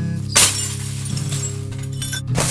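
Glass shattering with one sudden crash about half a second in, as an old CRT television screen is smashed, over a slow song playing steadily.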